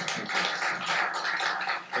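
Audience applauding, a steady patter of many hands clapping that dies away near the end.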